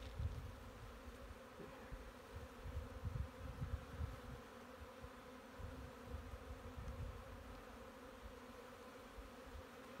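A colony of honey bees buzzing around an opened hive and a lifted frame, a faint steady hum, with uneven low rumbling underneath.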